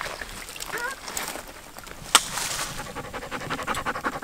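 A dog panting rapidly close to the microphone, with quick, even breaths, clearest in the second half. A single sharp click about two seconds in is the loudest moment.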